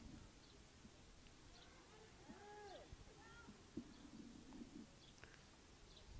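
Near silence, with a few faint arching calls about halfway through.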